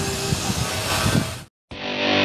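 A steady rushing background noise fades out about a second and a half in. After a brief moment of dead silence, guitar music starts near the end.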